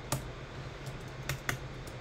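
Computer keyboard being typed on: a handful of separate key clicks at an uneven pace, over a low steady hum.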